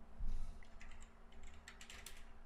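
Typing on a computer keyboard: a dull thump just after the start, then a quick run of separate key clicks as a word is typed.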